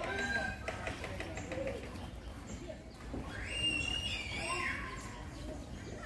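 People's voices in the background, with one long high-pitched call about halfway through over a steady low rumble.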